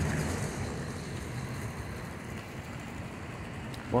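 Steady low rumble of distant city traffic, easing slightly about a second in.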